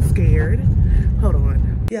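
Steady low road rumble inside a car's cabin, under a woman's talking. It cuts off abruptly with a click near the end.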